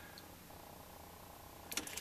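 Quiet room tone with a faint steady electrical hum; a faint steady higher tone joins about half a second in, and a couple of faint clicks come near the end.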